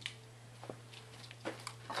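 Quiet room tone with a steady low hum and a few faint scattered clicks.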